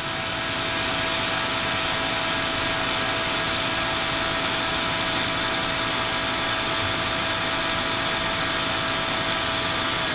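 Ultrasonic cleaning tank in operation, with water circulating in through a hose: a steady hiss of churning water and cavitation with a steady mid-pitched tone through it, as a sheet of aluminium foil in the bath is broken up by the ultrasound.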